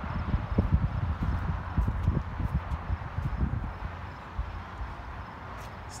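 Wind buffeting a phone microphone as an uneven low rumble, with footsteps on pavement from someone walking; the rumble eases off in the second half.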